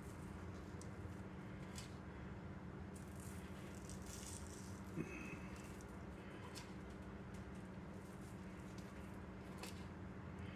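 Faint fingertip sprinkling of sugar and pumpkin pie spice onto cookies: light scattered ticks and a soft patter of granules over a steady low hum, with one small tap about five seconds in.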